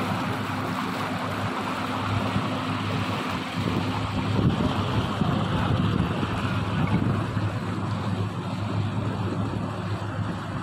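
A motorboat under way: a steady low engine hum over water rushing and churning along the hull, with wind buffeting the microphone.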